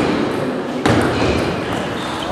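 Table tennis ball being struck by bats and bouncing on the table during a rally: two sharp knocks with a short ringing tone, the louder one a little under a second in.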